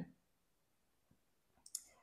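Near silence: room tone, with a couple of faint short clicks near the end.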